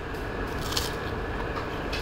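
Crunching of crispy deep-fried grey mullet skin and bone being chewed, a few crackly bites over a steady room hum.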